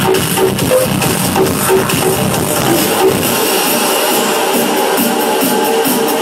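Loud electronic dance music from a DJ set played over a nightclub sound system. A little over three seconds in, the deep bass drops out, leaving the synth melody running on its own.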